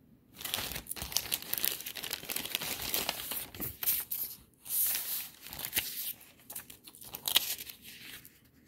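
Clear plastic zip-top bag crinkling and rustling as it is handled and opened and paper cards are drawn out of it: a dense run of crackles with a short lull about halfway and a sharper crack near the end.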